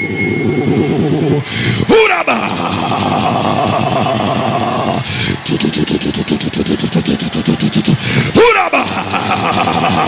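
A man's voice through a microphone and PA uttering fast repeated syllables and a rapid rolling trill rather than plain words. Two loud shouts sweep sharply down in pitch, about two seconds in and near the end.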